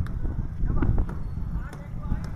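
People's voices in the background over a steady low rumble, with a few sharp knocks.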